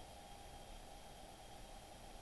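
Near silence: only a faint, steady hiss of room tone.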